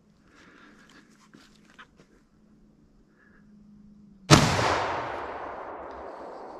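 A single rifle shot about four seconds in, sudden and loud, its sound rolling away and fading over the next couple of seconds: the shot that kills a boar hog held in a pen trap.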